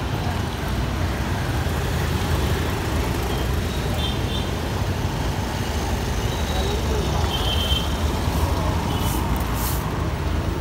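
Steady city street traffic: a continuous rumble of passing vehicle engines and road noise, with faint background voices.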